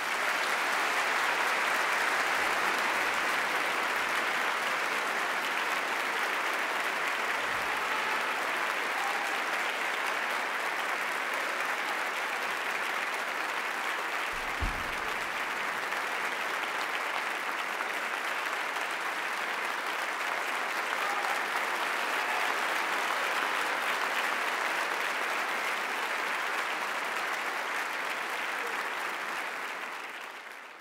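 Concert-hall audience applauding steadily at the end of an orchestral performance, the clapping swelling up within the first second. A single short low thump sounds about halfway through.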